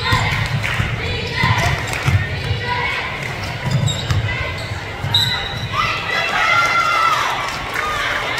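Basketball being dribbled on a hardwood gym floor, bouncing over and over at an uneven pace, about one or two bounces a second.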